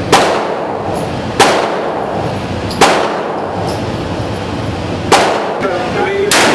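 Four gunshots with the echo of an indoor shooting range. The first three come about a second and a half apart, and the fourth comes after a longer pause.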